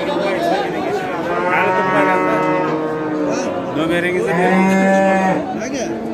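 Cattle mooing: two long calls, the first starting about a second and a half in, the second, louder one about four seconds in.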